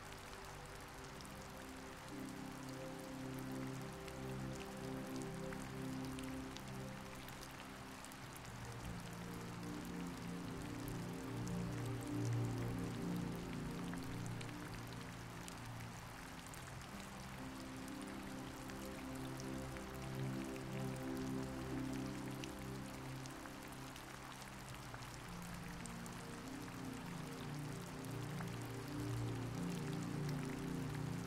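Steady rain with fine scattered drops, under soft, slow background music of held low notes that change every few seconds.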